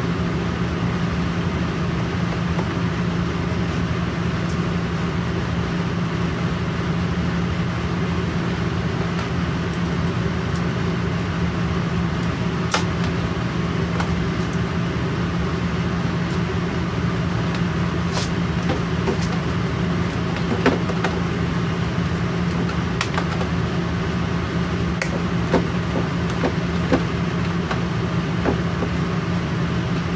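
A steady machine hum, with scattered small clicks and taps of a hand screwdriver fastening screws into drawer-runner fittings, most of them in the second half.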